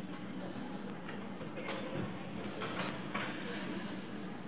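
Figure skate blades scraping and cutting the ice in several short strokes, over a steady rink hum.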